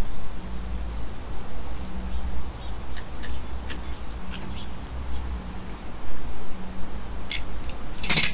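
A screw-type brake piston wind-back tool being turned slowly in a front brake caliper, pushing the piston back, with a few faint clicks over a low steady rumble. Faint bird chirps come and go.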